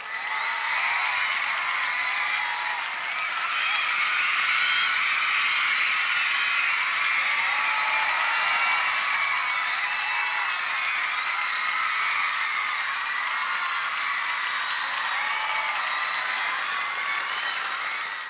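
Studio audience cheering and screaming with applause at the end of a K-pop stage: a steady dense mass of many high voices.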